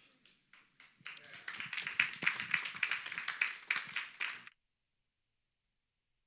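A congregation applauding, starting about a second in; the sound cuts off abruptly to silence about four and a half seconds in.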